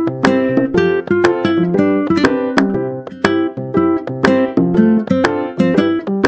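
Background music: a plucked string instrument playing a steady, even run of notes, each note starting sharply and ringing off.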